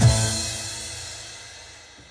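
Yamaha PSR-SX900 arranger keyboard's accompaniment style finishing its ending: a last chord with a cymbal crash rings out and fades away over about two seconds, heard through the keyboard's built-in speakers.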